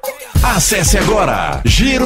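Hip hop music with a rapped vocal over the beat; after a brief drop at the start, the voice comes in about a third of a second in.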